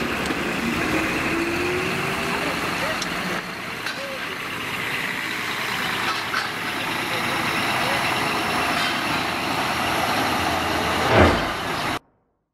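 Scania coach's diesel engine running as the bus drives past and away, with tyres hissing on wet pavement and people's voices around. The engine note rises in the first couple of seconds. A single sharp thump, the loudest sound, comes near the end.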